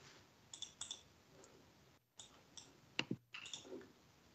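Faint, scattered clicks at a computer picked up by a video-call microphone, a few each second, with a slightly stronger knock about three seconds in.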